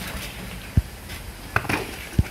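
Large plastic surprise egg being handled and pried open on a trampoline mat: a soft low thud a little under a second in and a brief plastic click past the middle.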